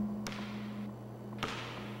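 Two sharp knocks about a second apart over a low steady hum.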